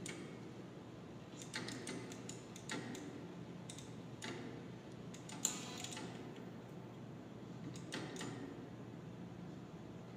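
About a dozen faint, sharp clicks at irregular intervals, some in quick clusters: a rat pressing the lever of a DIY operant conditioning chamber running a fixed-ratio schedule.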